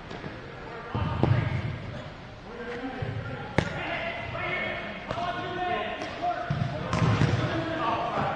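Futsal ball kicked and bouncing on a hard indoor court: several sharp thuds a second or more apart, among people's voices calling out.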